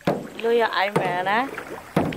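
A person's voice talking in a wavering, rising-and-falling pitch, with a sharp knock at the very start and another just before the end.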